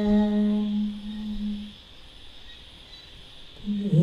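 Buddhist nuns chanting: a long humming note held on one steady pitch fades out a little under two seconds in. After a pause of about two seconds the chant starts again near the end.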